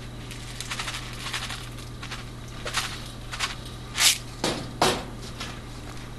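Dry turtle food pellets rattling in a plastic canister as it is shaken out over the tank, in a run of quick rattles about a second in and then five separate shakes, the loudest about four seconds in. A steady low hum runs underneath.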